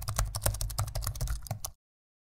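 Keyboard typing sound effect: a fast run of key clicks over a low rumble, cutting off suddenly near the end.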